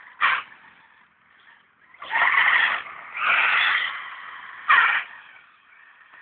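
A buggy driving, its tyres skidding on loose ground in four noisy bursts: a short one at the start, two longer ones in the middle lasting nearly a second each, and a short one near the end.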